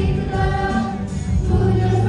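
A woman and three girls singing a Bollywood song together through microphones, holding notes that change about every half second, with steady low notes beneath.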